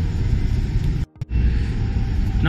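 Steady low rumbling background noise with no distinct event in it. About a second in it drops out to near silence for a moment, then resumes.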